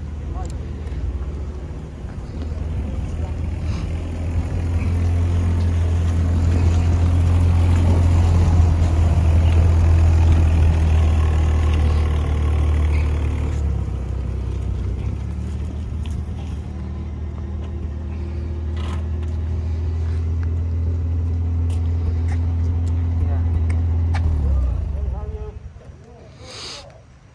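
Daimler Ferret scout car's Rolls-Royce six-cylinder petrol engine running with a deep low rumble as the car drives past, loudest about ten seconds in. The engine sound cuts off sharply near the end.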